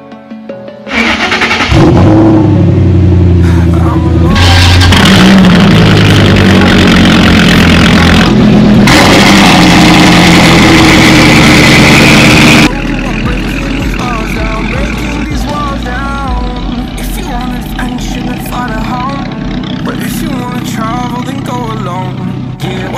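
A 2019 Corvette Z06's supercharged V8 starts about a second in, very loud, and is revved several times until it cuts off abruptly about twelve seconds in. After that a quieter music track with rapped vocals plays over a low engine sound.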